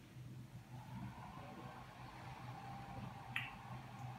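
Faint steady whir as a NAO v6 humanoid robot starts booting after its chest button press, coming up about a second in, with one sharp click a little over three seconds in.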